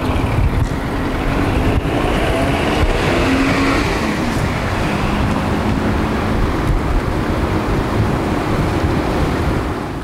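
Road traffic noise: cars running past on a nearby street, a steady rush with engine tones, one pass swelling louder a few seconds in.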